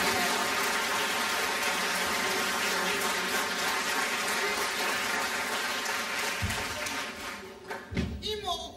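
Live theatre audience applauding steadily as actors walk on stage, dying away near the end.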